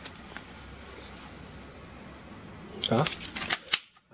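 Steady low background hum, then near the end a short burst of sharp crackling rustles and clicks from something being handled by hand.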